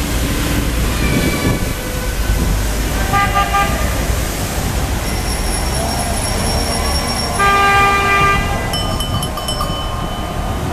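Horns honking in city traffic over steady rumble and wind on the microphone, with the loudest honk lasting about a second, about seven and a half seconds in. Earlier shorter toots come around the first and third seconds, and a quick run of high ringing tones follows near the end.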